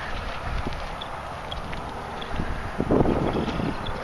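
Wind buffeting the microphone with a low rumble, swelling into a louder rush about three seconds in.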